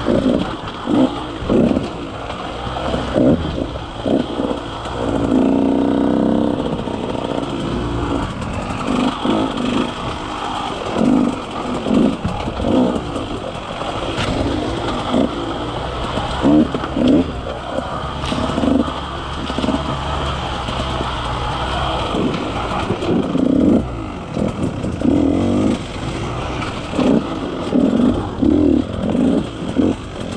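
KTM 150 XC-W two-stroke single-cylinder dirt bike engine on a slow, technical trail, the throttle opened in many short bursts between off-throttle moments, with one longer rising rev about five seconds in.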